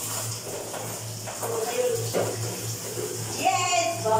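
Water splashing and sloshing from a plastic basin in a tiled bathroom, with a low steady hum under it and a voice near the end.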